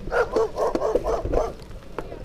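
A dog barking: a quick run of about five barks in the first second and a half.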